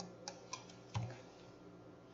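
A few faint computer keyboard key clicks as a number is typed into a settings field, with a brief low sound about a second in.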